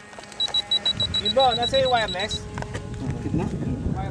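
Radio-control transmitter beeping as its switches are worked: a rapid run of short, even high beeps, about nine a second, stopping about two and a half seconds in. A low rumbling noise comes in from about a second in.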